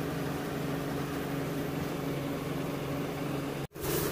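Electric rice-hulling machine running steadily with a low, even hum. The sound breaks off abruptly for a moment near the end.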